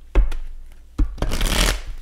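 A deck of tarot cards being shuffled by hand: two thumps, then a rush of riffling cards lasting about half a second.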